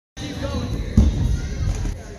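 Stunt scooter wheels rolling over wooden skatepark ramps as a low, steady rumble, with one sharp thud about a second in as the scooter comes down the ramp.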